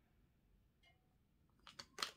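Near silence, then a few short, soft clicks near the end as a deck of tarot cards is picked up and handled on the table.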